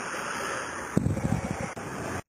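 Wind on the camera's microphone: a steady rush that turns, about a second in, into irregular low buffeting.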